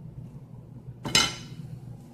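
One sharp clink against a ceramic dinner plate about a second in, with a brief ring, as a second slice of Texas toast is set on the plate. A faint low hum runs underneath.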